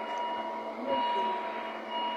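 An electronic beeping tone that sounds, pauses and sounds again over steady background noise, with faint voices.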